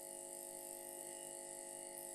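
A faint, steady hum made of many evenly spaced tones, unchanging throughout, in a pause between spoken phrases.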